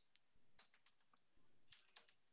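Faint computer keyboard typing: a scattered handful of quiet keystrokes as a command is entered.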